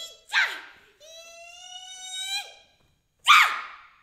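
A woman's voice giving a sharp cry that falls in pitch, then holding a long high note that rises slightly for about a second and a half before breaking off, then another loud falling cry near the end, with no words.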